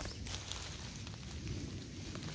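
Faint rustling of grass and dry forest litter close to the microphone, with a few small crackles.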